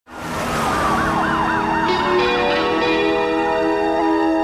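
Police car siren in a fast up-and-down yelp, its pitch sliding lower as it passes and dying out about halfway through. Sustained music chords swell in as the siren fades.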